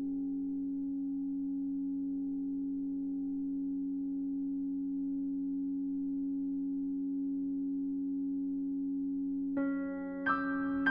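Grand piano strings driven by EBows, sustaining a steady drone of several held tones that do not decay. Just before the end a piano chord is struck over the drone.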